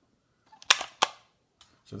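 Plastic cover flaps of a Salus RT500RF wireless thermostat snapping shut: two sharp clicks about a third of a second apart, a little under a second in.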